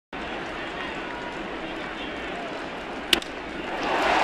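Crack of a wooden baseball bat hitting a pitched ball, one sharp strike about three seconds in, over the steady murmur of a stadium crowd that swells just after the hit.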